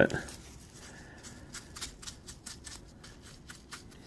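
Faint, irregular gritty scratches and clicks of silicon carbide grit being handled and pressed by fingers into a pistol grip coated in J-B Weld epoxy.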